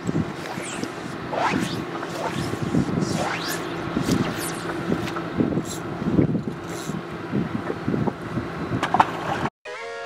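Outdoor noise on a small fishing boat, with wind and water and scattered knocks and rustles, while a smallmouth bass is brought aboard by hand. It cuts off near the end and music begins.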